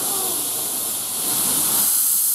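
Steady hiss of steam from a Hudswell Clarke 0-6-0 well-tank narrow-gauge steam locomotive standing in steam, growing louder a little past halfway through.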